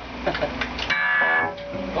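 A 1974 Marshall Super Bass valve head, switched on, buzzing loudly through its speaker cabinet for about half a second as the guitar cable's jack is pushed into the guitar, after a few clicks of the plug.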